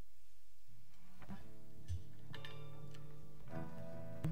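Slow instrumental offertory music from a live worship band begins a little under a second in: held chords with a few plucked notes picked out over them.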